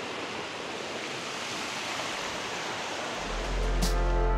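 Steady rushing of a fast-flowing river. About three seconds in, background music fades in with a low sustained note.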